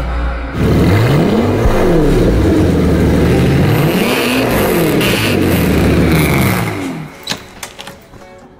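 BMW 8 Series coupe's engine revving: the pitch rises and falls back twice in long, slow sweeps, and it fades out about a second before the end.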